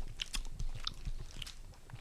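Close-miked chewing of a soft gummy lolly: scattered small wet clicks and smacks of the mouth, picked up by a headset microphone.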